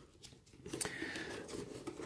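Faint handling sounds from a boxed diecast model's cardboard packaging: light rustling and a few small clicks, starting about half a second in.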